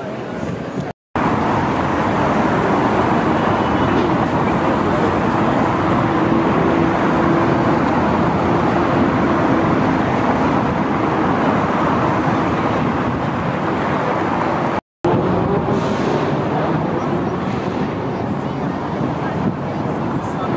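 Busy city street ambience: steady traffic noise mixed with the chatter of passing pedestrians. It cuts to silence briefly twice, about a second in and again about fifteen seconds in.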